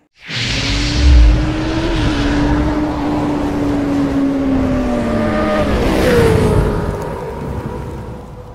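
Motorcycle engine sound effect from an intro animation, running at high revs with a heavy low thump about a second in. Its pitch holds, then drops about six seconds in, and the sound fades near the end.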